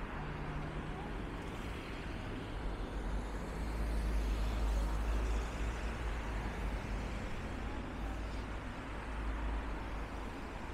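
Cars driving past one after another on a town street, a steady rush of tyres and engines that swells as one passes about four to five seconds in.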